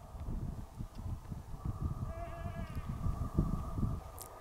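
A feral goat bleating in one long wavering call, heard faintly, over a low irregular rumble.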